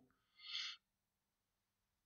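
Near silence with one brief, faint breath about half a second in, a short pause between spoken phrases.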